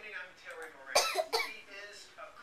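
Indistinct voices without clear words, with one short, sharp cough-like burst about a second in.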